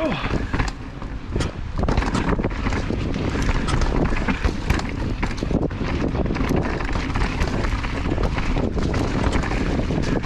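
Mountain bike descending a dirt forest trail at speed: a steady rumble of wind on the camera microphone and tyre noise, broken by frequent clicks and clatters as the bike rolls over roots and rocks.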